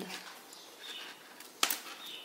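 Quiet handling of beads and steel memory wire being threaded through a metal spacer bar, with one sharp small click a little past halfway.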